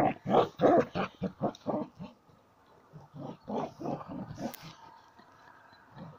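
Border collie growling in quick bursts while playing with a ball, about four a second for the first two seconds, then softer and sparser. A brief sharp click about four and a half seconds in.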